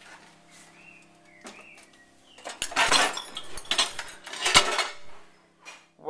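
Crockery and a dishwasher rack clattering and clinking as clean dishes are handled and lifted out of the dishwasher. It is quiet at first, then comes a run of clatters from about two and a half seconds in.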